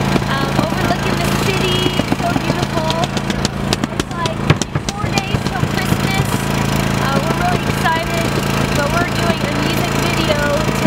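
Generator engine running steadily with a low hum, under indistinct voices.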